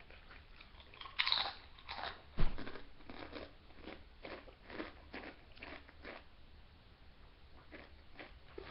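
Crunchy Doritos tortilla chip being bitten and chewed: a few loud crunches in the first couple of seconds, then softer, regular chewing, about two chews a second, fading away near the end.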